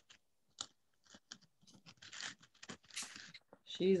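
Faint crinkling and rustling with small scattered clicks as craft materials (flowers, ribbon, a hat) are handled, broken by short quiet gaps.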